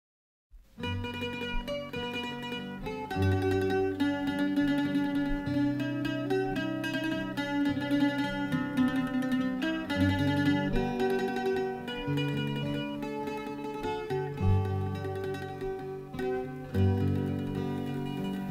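Instrumental introduction to an Irish folk song played on plucked string instruments: a picked melody of short notes over changing low bass notes. It starts about half a second in.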